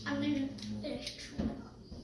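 A child's voice making a held, level-pitched sound lasting about a second, then a single short knock about one and a half seconds in.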